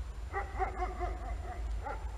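A dog barking and yelping in a rapid string of short pitched calls lasting about a second and a half, over a steady low rumble.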